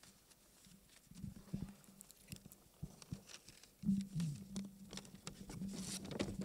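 Soft knocks, clicks and rustles from a handheld microphone and paper being handled at a lectern, picked up through the hall's sound system, with a low hum that swells about four seconds in.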